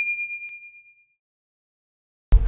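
Notification-bell 'ding' sound effect ringing out: a few clear bell tones fade away within about the first second. A faint click comes about half a second in.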